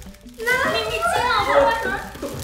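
Excited, high-pitched women's voices exclaiming and talking over one another, beginning about half a second in, with background music.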